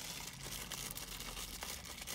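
Packaging rustling and crinkling steadily, with small clicks, as hands rummage through the contents of a product box.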